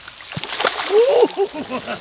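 Pet bass striking at the pond surface as it takes food. A sharp splash comes about half a second in, then about a second of gurgling, dripping water.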